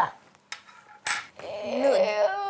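A few sharp clicks of metal spoons against a tabletop, then near the end a child's voice rises into a drawn-out moan after tasting the caviar.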